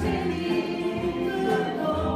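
A large group of voices singing together in a bluegrass jam, over strummed acoustic guitars and upright basses playing in C.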